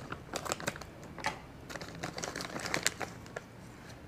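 Scissors snipping open a plastic bag, and the bag crinkling as a small item is pulled out: a run of irregular light clicks and rustles.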